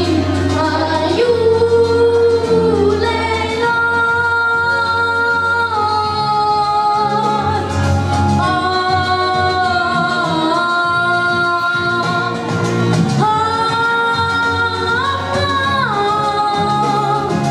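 A boy singing through a handheld microphone over instrumental backing music, holding several long notes.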